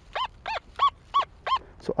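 XP Deus metal detector's remote speaker giving a target signal on the Deep Relic program: a string of short beeps, about three a second, each rising and falling in pitch, which the detector reads as target ID 87.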